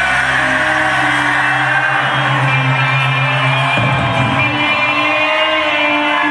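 Live rock band playing loudly in a large hall, recorded from the audience: sustained chords over a held low bass note that drops out about four seconds in, with a wavering pitch slide above it.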